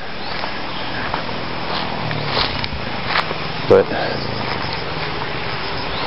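Steady rushing outdoor background noise with the low hum of a motor vehicle engine on the nearby highway, coming in about two seconds in, and a few light clicks.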